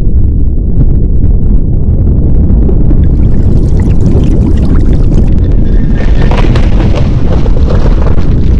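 Loud, steady low rumbling roar with crackle, an earthquake rumble, with more hiss and crackle coming in over the second half.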